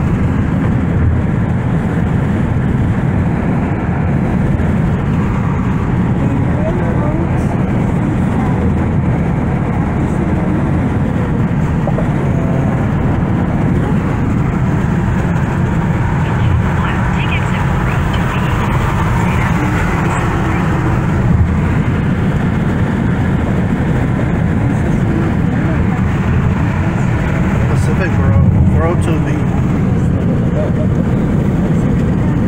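Steady low rumble of road and wind noise inside a car cabin while driving at highway speed.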